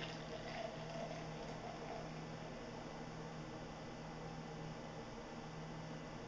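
Beer pouring from a 24-ounce can into a glass in a steady stream, foaming up into a white head.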